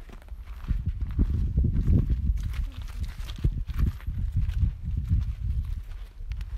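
Footsteps of a person walking over dirt and gravel ground, an irregular series of steps, with wind rumbling on the microphone.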